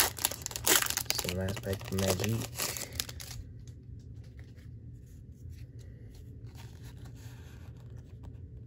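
Foil wrapper of a Pokémon booster pack being torn open and crinkled by hand, a busy crackly tearing over the first three seconds that then drops to quiet handling.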